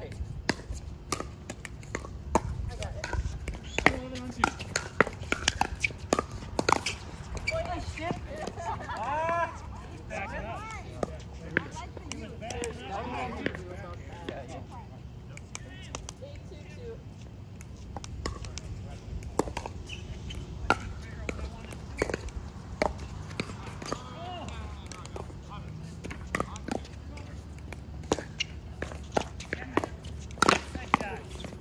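Pickleball paddles striking a plastic ball and the ball bouncing on the hard court: sharp pocks at uneven intervals throughout, with people talking in the background, mostly in the middle stretch.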